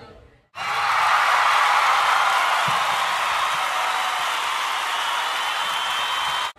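A loud, steady rush of even noise, like applause, that starts abruptly about half a second in after a brief silence.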